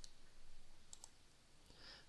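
Faint clicks of a computer mouse over quiet room hiss, a close pair about a second in.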